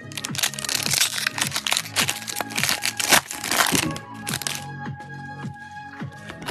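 A foil trading-card pack crinkling and tearing as it is ripped open by hand, a dense crackle lasting about four and a half seconds before it stops.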